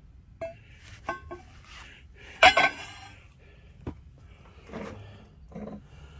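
Metal clinks and knocks as steel is handled on a milling-machine table: a few light taps, with one louder clang about two and a half seconds in that rings briefly.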